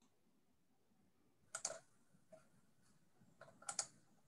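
A few sharp clicks at a computer: a pair about one and a half seconds in, one softer click, then a quick cluster near the end, over faint room tone.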